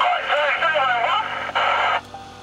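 A voice coming over a fishing boat's two-way radio, thin-sounding and hard to make out, ending in a burst of static before it cuts off suddenly.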